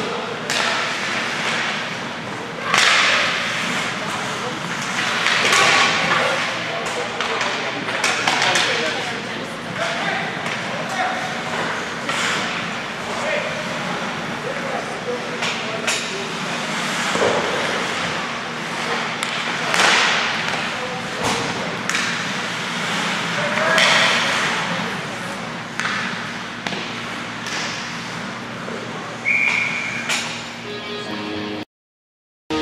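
Ice hockey play: skates scraping and carving the ice, with sticks and the puck knocking and thudding against the boards. Spectators' voices sound throughout, and a short, steady whistle blast comes near the end.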